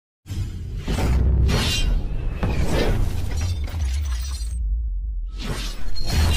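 Logo intro sting: music with heavy bass overlaid with sound effects, a shattering-glass crash and several sweeping whooshes. The high end cuts out for a moment near the end before another whoosh comes in.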